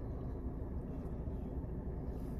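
Steady low rumble inside a parked car's cabin, typical of the car idling.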